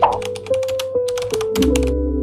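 Computer keyboard typing sound effect: a rapid run of key clicks, stopping shortly before the end, over background music with sustained notes.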